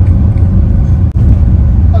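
Loud, steady low rumble of a car on the move, heard inside the cabin: engine and road noise, with a brief drop about a second in.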